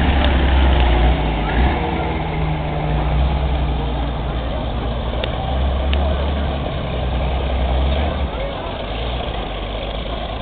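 Engine of a WWII M3A1 scout car running with a low, steady drone as the vehicle drives slowly past and pulls away, growing quieter near the end.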